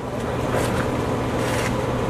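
Crowd applauding, a steady even clapping that rises in just as the preceding music stops.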